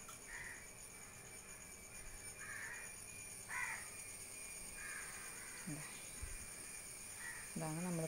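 Crow cawing in the background: about five short, spaced caws.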